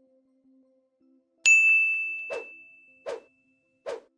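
Sound effects of a subscribe-button end-screen animation. A bright single-tone ding comes about one and a half seconds in and rings out for over a second. It is followed by short soft pops about every 0.8 seconds.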